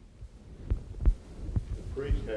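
Quiet room tone with a low hum and about three soft, low thumps spread through it.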